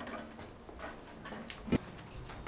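Quiet room tone with a few faint ticks, and one sharp short click near the end.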